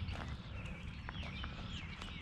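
Footsteps crunching on gravel, a few soft steps, with small birds chirping in the background.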